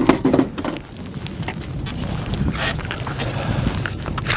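Wind on the microphone and water moving around a small boat, a steady rumbling hiss, while an angler plays a hooked fish close to the boat.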